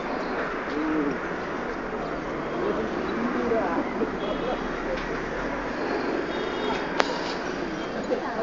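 Busy outdoor city ambience: a hubbub of distant voices mixed with birds calling. A single sharp click comes about seven seconds in.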